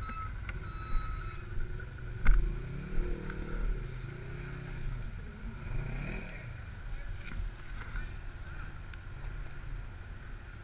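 Side-by-side UTV engine running, revving up and back down about three seconds in and again around six seconds in, with a couple of sharp knocks in the first few seconds.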